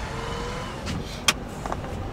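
Car cabin with a low steady rumble of the car and traffic, and a few light ticks and one sharp click about a second in, as a street windshield washer scrubs the windshield with a wiper blade.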